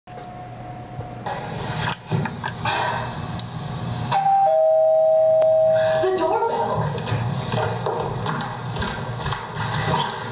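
Two-tone doorbell chime sounding once, a higher note followed by a lower one, both cut off about six seconds in.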